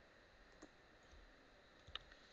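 Near silence: room tone with two faint clicks, one about half a second in and a slightly sharper one near the end.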